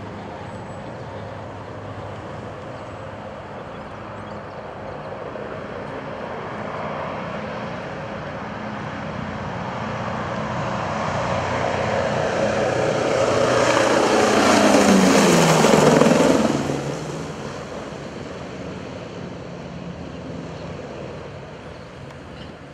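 Douglas DC-7's four radial piston engines and propellers at climb power as it lifts off and passes low overhead. The drone grows steadily louder, is loudest about fifteen seconds in, drops in pitch as the plane goes past, then fades as it climbs away.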